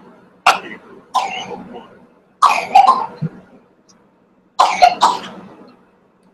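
A person coughing repeatedly, about six harsh coughs in three pairs spread over several seconds.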